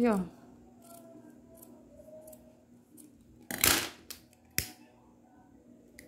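Scissors cutting through grosgrain ribbon: one short snip about three and a half seconds in, then a single sharp click about a second later.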